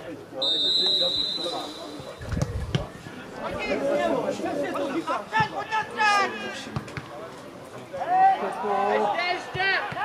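A referee's whistle blown once in one steady blast of a little over a second, signalling the set piece to be taken. Players then shout to each other on the pitch.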